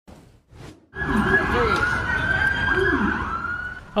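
Siren wailing over a steady rumble, starting about a second in, its high tone sliding slowly down.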